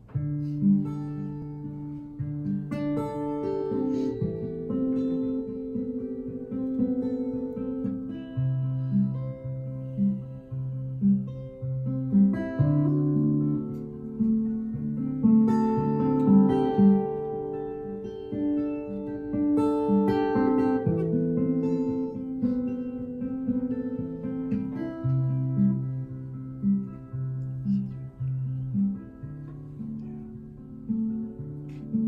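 Solo acoustic guitar playing a song's instrumental intro: a repeating pattern of short notes over changing bass notes.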